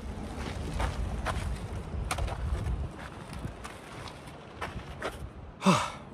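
Wind rumbling on the microphone, with scattered clicks and rustles of handling and movement on gravel, and a short breathy sound near the end.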